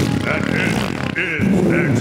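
A man's voice imitating the engine of a big mulching lawn mower running, a vocal sound effect, with a spoken word near the start.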